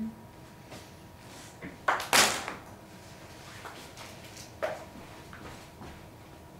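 Handling noises close to the microphone: a few scattered clicks and knocks, the loudest a short scraping clatter about two seconds in, as something is moved right in front of the recording device.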